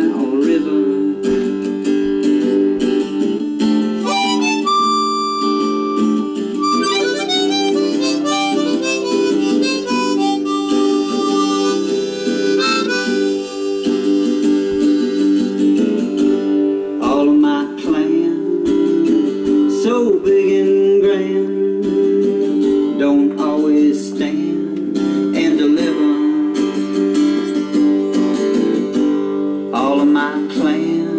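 Harmonica solo played over acoustic guitar accompaniment, with sustained chords under a moving harmonica melody between sung lines.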